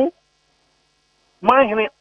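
Speech over a telephone line breaks off, leaving over a second of near silence with only a faint hum, then the voice resumes near the end.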